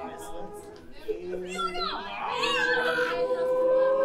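A small group of adults singing a cappella and talking: a sung phrase dies away, voices chatter and glide up and down, then one long sung note starts about two seconds in and holds.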